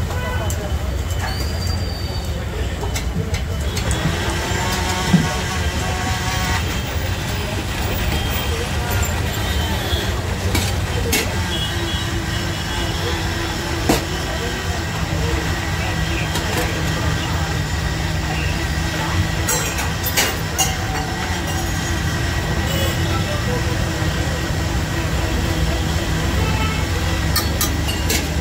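Steady low rumble and indistinct voices of a street-food stall, with a few sharp metal clinks of a ladle and spatula against the iron dosa griddle.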